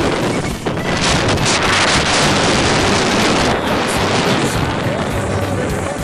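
Wind rushing loudly over the microphone of a camera skiing down a piste, with music underneath.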